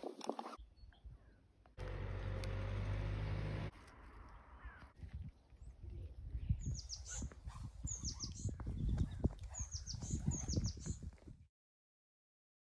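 A small bird chirping in short groups of two to four quick, high, falling notes over scattered low thumps. A steady low hum runs for about two seconds before the chirping starts.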